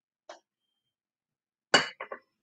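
A woman coughing once, sharply, near the end, after a faint short sound about a third of a second in.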